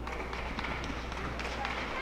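Live ringside sound of a boxing bout: shouting voices around the ring over a steady low hum, with a few short sharp taps from the action in the ring.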